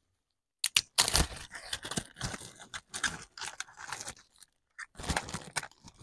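Plastic packaging crinkling and rustling in irregular crackles and clicks as items are handled and wrapped for shipping.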